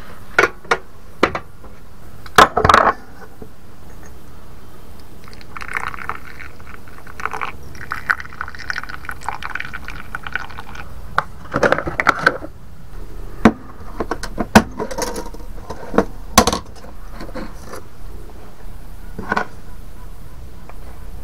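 Clinks and knocks of kitchen things being handled in a small camper kitchen, and a stream of coffee being poured into a stainless steel mug for several seconds in the middle.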